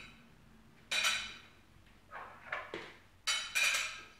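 Metal silverware clinking against a china plate as pieces are picked up and set down: a clink about a second in, a few softer touches, then a quick cluster of brighter ringing clinks near the end.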